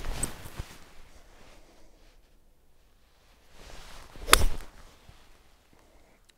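Golf seven-iron swing: a short swish ending in a sharp crack as the club strikes the ball, right at the start. A second, louder swish and crack comes about four seconds in.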